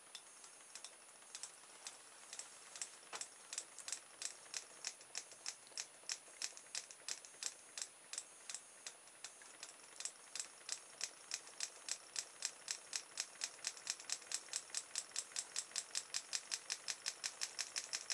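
Homemade pulse motor starting up: its open-air reed switch clicks once with each pulse as the magnets on the spinning pop-bottle rotor pass the speaker-wire coil. The clicks come faster and faster as the rotor gathers speed, from about one a second to four or five a second by the end.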